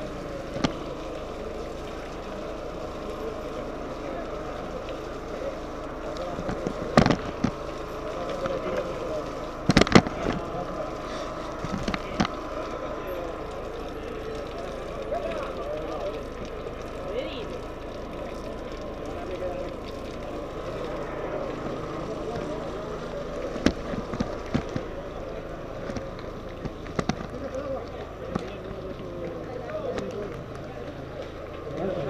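Indistinct chatter of a crowd of cyclists talking at once, with a few sharp knocks and clicks.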